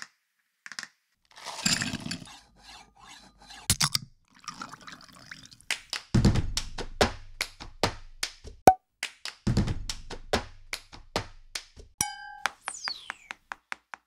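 A percussion beat made from found sounds: fingertips tapping and drumming on a tabletop and plastic cups knocked down on the table, the sharp taps growing denser into a steady rhythm. Two deep thuds, about three seconds apart, mark the beat midway, and near the end come a short beep and a falling swish.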